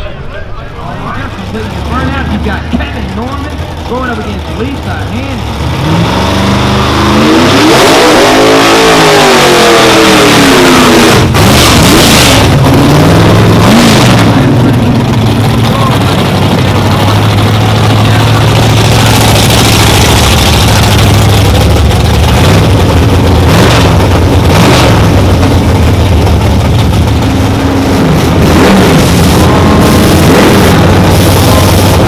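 Drag-race car engines at high revs: the engine pitch rises and falls about a quarter of the way in, then holds a loud, steady note for the rest of the time.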